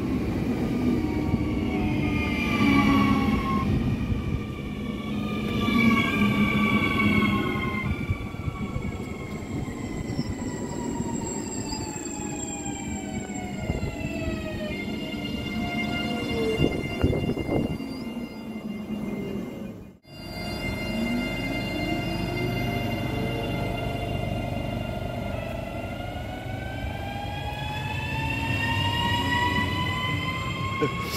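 ČD class 641 RegioPanter electric multiple unit's traction equipment whining in several pitches at once. The tones slide down in pitch over the first half, drop out briefly about two-thirds of the way in, then slide up again.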